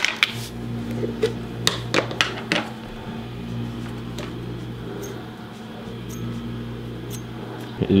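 Handling sounds of a turbocharger being turned over in the hands: scattered light clicks and knocks of metal and plastic caps, most in the first few seconds, over a steady low hum.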